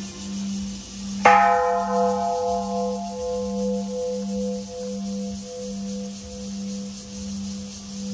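Large hanging temple bell rung by pulling its rope: struck once, about a second in, with a bright clang whose many tones ring on and fade slowly. Under it, a deep hum throbs in steady slow pulses all through.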